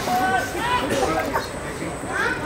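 Several voices calling and shouting across a football pitch during play, overlapping with one another.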